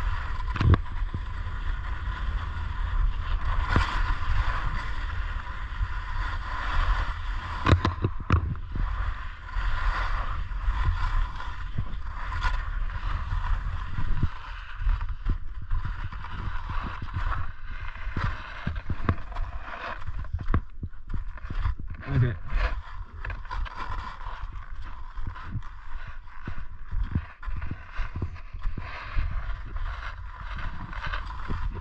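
Skis sliding and scraping over packed snow on a downhill run, with a continuous hiss and occasional sharp knocks. Wind buffets the camera's microphone throughout as a steady low rumble.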